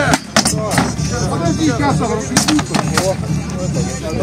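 Weapons striking wooden shields in a staged medieval melee: several sharp knocks, a quick cluster in the first second and two more midway, over shouting voices and music.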